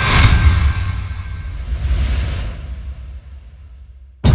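Cinematic logo-sting sound effects: a sharp hit with a deep booming low end about a quarter second in that rings on and dies away, then a whoosh around two seconds in that fades out.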